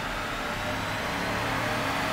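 A 2014 Chevy Silverado 1500's 5.3-litre V8 running under load on a chassis dynamometer in a dyno pull, with engine, exhaust and tyre-on-roller noise getting gradually louder.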